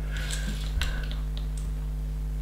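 Loose LEGO plastic bricks clicking as a hand sorts through the pieces: a few light, separate clicks.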